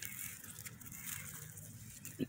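Faint, steady outdoor background noise with no distinct event.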